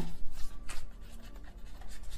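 Tarot cards being shuffled and handled: dry, papery rubbing with a few light flicks, louder in the first second and then softer.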